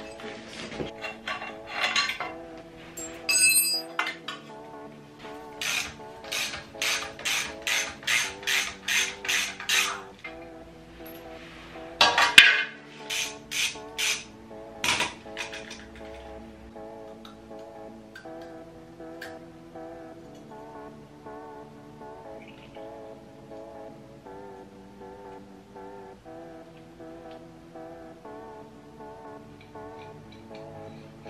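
Background music over hand-tool work on a pit bike's Loncin engine. In the first half a run of sharp metallic clicks comes at about two a second, typical of a ratchet wrench. A few seconds later there is a short cluster of louder clinks, and after that only the music is left.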